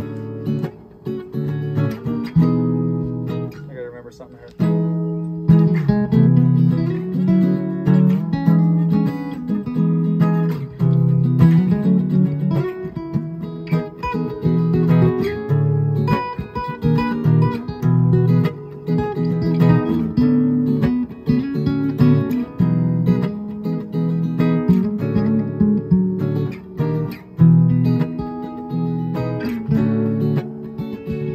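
Two acoustic guitars playing together, with a short drop in level about four seconds in before fuller playing resumes.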